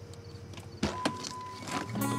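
Two sharp clicks about a second in, and a fainter one near the end, from a car's latch mechanism inside the cabin, heard over sustained soundtrack music.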